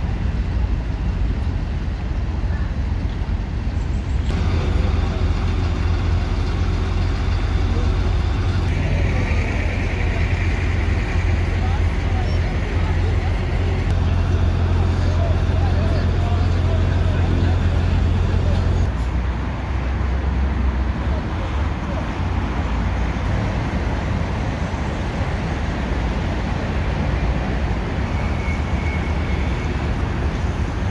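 Fire engines running at the scene: a steady low engine drone that shifts abruptly a few times, with voices in the background.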